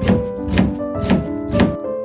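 Kitchen knife slicing through an onion onto a plastic cutting board: four chops about half a second apart, over background music.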